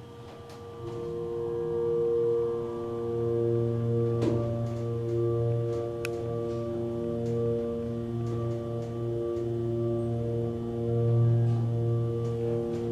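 ThyssenKrupp HIGHdraulic hydraulic elevator running upward: a steady hum from the hydraulic pump motor, made of several fixed tones that swell and fade in turn, with a few faint clicks.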